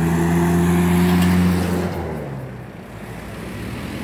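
A pickup truck driving past: its engine and tyre noise swell to a peak about a second in, then fade away over the next couple of seconds.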